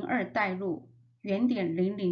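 A woman's voice speaking in narration, with a short pause about a second in.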